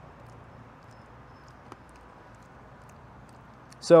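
Low, steady background hiss with a few faint clicks from a man eating pomegranate arils; a man's voice begins near the end.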